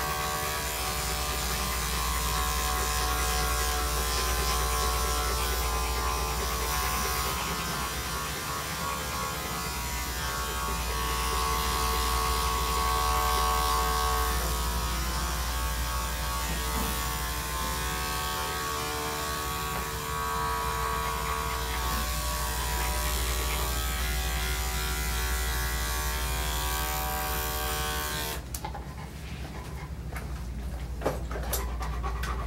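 Corded electric pet-grooming clippers running steadily as they cut through a dog's coat. They switch off abruptly about two seconds before the end.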